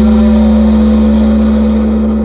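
Electronic music intro: a loud, steady synthesizer drone over a deep sustained bass tone, with a hissy wash on top that thins out toward the end.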